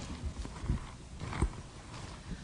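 A few soft, low thumps, about a second apart, over quiet room noise.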